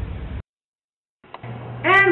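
Faint room tone that cuts to total silence for under a second, then a steady low hum comes in and a woman's voice starts speaking near the end.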